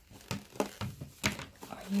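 Fingers picking and pressing at a cardboard calendar door: a series of short crinkles and taps of the card.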